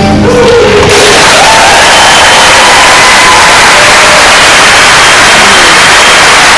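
The song's last sung note fades out within the first second, then a loud, steady rush of noise covers the whole range, with a few faint tones inside it.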